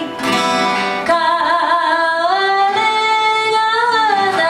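A woman singing with her own acoustic guitar accompaniment. After a brief lull at the start, her voice comes in about a second in on a long held note that steps up in pitch partway through.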